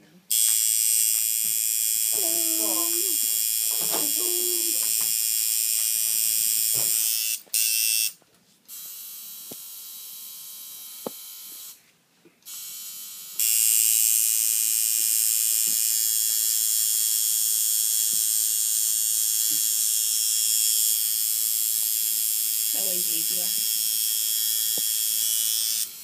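Electric tattoo machine buzzing in a steady, high-pitched drone as the needle inks a forearm tattoo. It cuts out about a third of the way in and starts again about halfway through.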